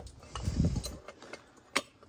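A dull thump as a homemade steel cylinder-liner puller carrying a just-pulled engine cylinder liner is set down on a rag, then a few light metallic clicks and clinks, the sharpest shortly before the end.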